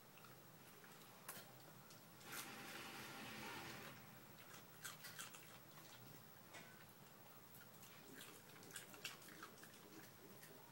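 A Shetland sheepdog eating up crumbs of raw cauliflower, faintly: scattered soft crunches and clicks, with a longer soft noise a couple of seconds in.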